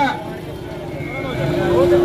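Many people's voices talking over one another in an outdoor crowd. A steady held tone comes in past the middle.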